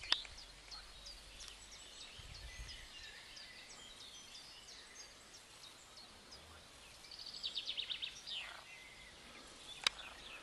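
Small birds chirping with many short, high calls throughout, and a quick run of repeated notes about seven and a half seconds in. A sharp click comes at the start and another just before the end.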